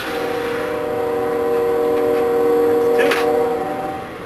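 A multi-tone horn sounding one long, steady chord that stops near the end.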